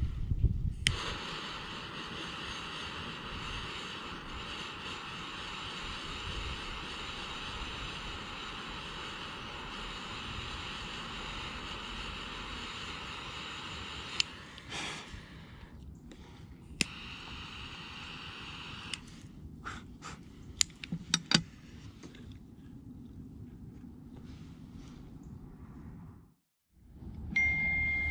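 Butane torch lighter lit with a click and hissing steadily as it toasts and lights a cigar. Its flame stops near the middle, is relit with a click a couple of seconds later and hisses again briefly, followed by several sharp clicks.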